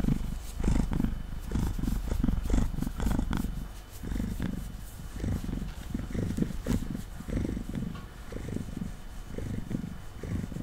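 Domestic cat purring close to the microphone, the purr swelling and fading about twice a second with its breathing, over light crackly scratching of fingers in its fur.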